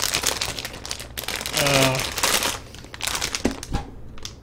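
Clear plastic packaging crinkling as it is handled and pulled open, in two spells of rustling with a short pause between, and a few sharp clicks near the end.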